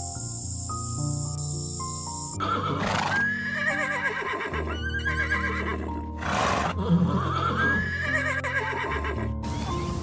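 Horse whinnying several times over background music, starting about two and a half seconds in and stopping shortly before the end. The music plays alone at first.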